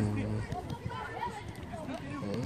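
Several voices of children and coaches calling out and chattering at once across an outdoor football training pitch, none of it clear speech.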